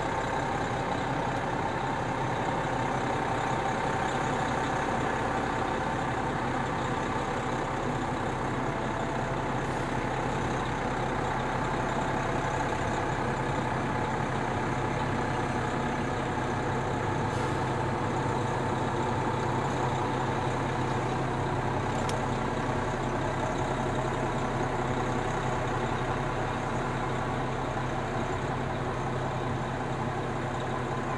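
Aerial ladder fire truck's diesel engine running steadily at low speed as the truck is driven slowly, a constant low drone.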